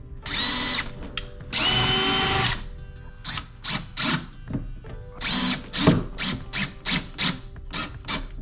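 Cordless drill driving stainless screws to mount a fuel water separator's bracket: two longer runs of the motor, each opening with a rising whine, then a string of short trigger bursts, about two a second.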